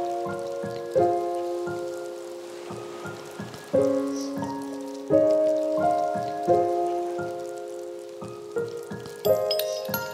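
Background music: held synth-like chords that change about every second, with short sharp percussive hits between them and a light crackly haze underneath.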